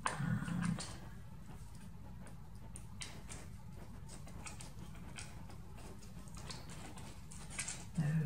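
Thin card stock being handled and fitted together: faint scattered clicks and light rustles as cut-out tabs are bent and slid into slots.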